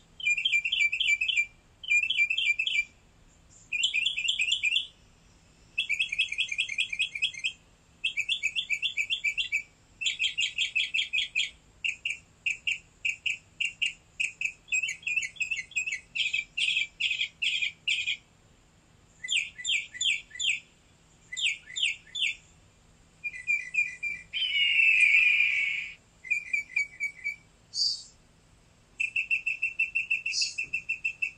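A small bird chirping: rapid trills of high chirps in bursts of about a second, repeated with short pauses, and one louder, harsher call near the end.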